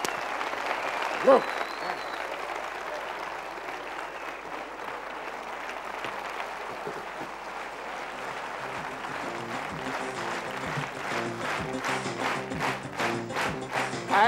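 Studio audience applauding. About eight seconds in, music with a steady beat and a stepping bass line comes in under the clapping.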